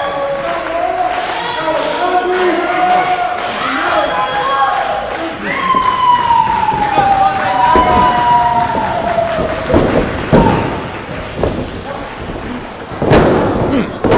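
Voices yelling in a small wrestling venue, with one long falling call about six seconds in, and thuds of wrestlers' bodies hitting the ring mat, the loudest near the end as one is taken down for a pin.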